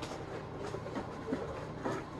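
Faint rustling and light knocks of objects being handled, over a steady low background hum.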